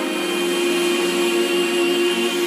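Electronic vocal trance track in a passage without bass or vocals: a held synth chord with one note sustained.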